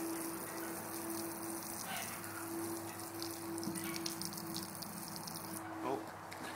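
Garden hose spraying water onto a flat board, a steady hissing splash that stops shortly before the end. A faint steady hum runs underneath.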